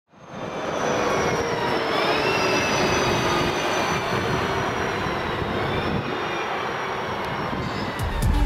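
A red-and-white city bus and a car driving past close by, steady engine and tyre noise with a faint high whine, easing slightly as they pull away.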